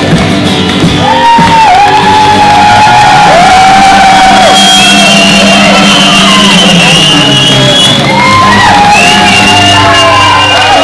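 Acoustic guitar strummed live while a crowd sings and shouts along loudly, many voices joining in from about a second in.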